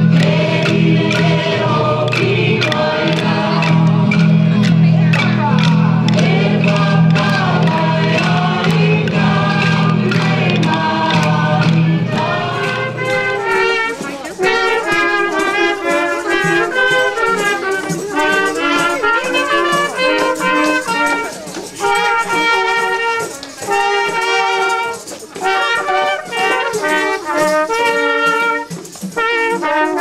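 Music with a steady low drone under a melody; the drone stops about halfway, and a small brass group of French horns and a trumpet plays a tune in separate held notes.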